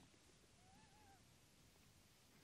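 Near silence: room tone, with one faint, brief call-like tone that rises and falls about half a second in.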